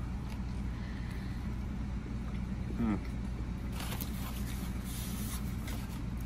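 A man chewing a mouthful of cheesesteak over a steady low background hum, with a short "mm" of approval about three seconds in.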